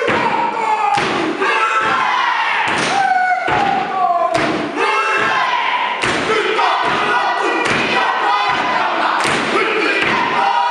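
Māori haka: a mixed group chanting loudly in unison, with a heavy foot stamp or body slap about every three-quarters of a second.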